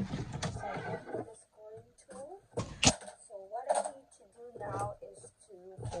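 A sheet of patterned craft paper being handled and flipped over on a scoring board, with a sharp paper slap or flap about midway through. A woman's soft, unclear voice murmurs between the paper sounds.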